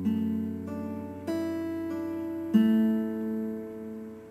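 Electric guitar with a clean tone, slowly picking a D suspended 2 over F sharp chord. Single notes are added about two thirds of a second in, at just over a second, and again halfway through, and the chord rings on and fades near the end.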